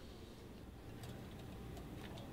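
Quiet room tone with a steady low hum and a few faint, irregular ticks.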